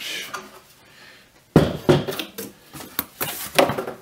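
Corrugated cardboard mailer pressed down into a plastic box-folding fixture and its sides folded up: a loud knock about a second and a half in, then a run of sharp taps and cardboard creasing sounds.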